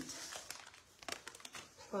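Light rustling and crinkling with a few small sharp clicks and taps as craft supplies are handled on the worktable.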